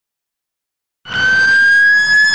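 A siren-like wail starts abruptly about a second in: a loud, steady high tone with overtones, over a haze of road noise.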